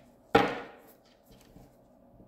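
A single sharp knock about a third of a second in, dying away within half a second.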